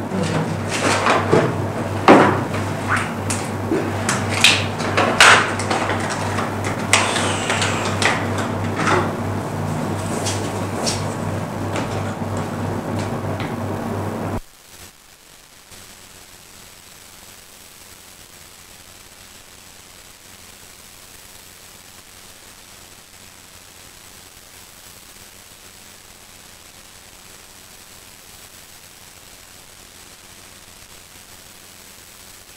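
Microphone handling noise: scattered clicks and knocks over a steady low electrical hum. About fourteen seconds in the live audio feed cuts out abruptly and only a faint steady hiss remains, a dropout that the lecturer herself calls a technical issue.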